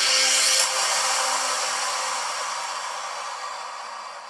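Logo intro sting: a shimmering electronic wash with a few low held tones that swells to a peak about half a second in, then slowly fades away.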